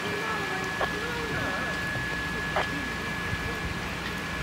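A large building fire burning with a steady crackling hiss and a few sharper pops. Faint distant voices and a thin steady high tone run under it.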